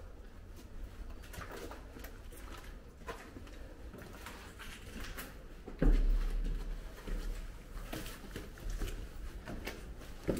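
Footsteps and clothing rustle while walking and climbing stairs, with scattered light knocks and one louder thump with a low rumble about six seconds in.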